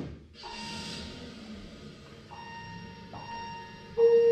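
Quiet start of a keyboard accompaniment: low room noise with faint held tones, and a loud sustained keyboard note coming in at the very end.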